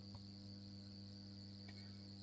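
Faint steady background noise: a low electrical hum with a constant high-pitched whine over it.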